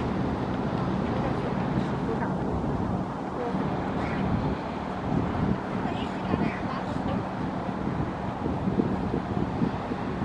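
Wind buffeting the microphone over a steady low engine hum, with faint voices now and then.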